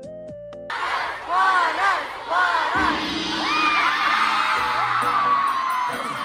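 Soft keyboard music, then a sudden cut about a second in to a live concert recording: a crowd of fans screaming and cheering over loud music, with high rising-and-falling shrieks.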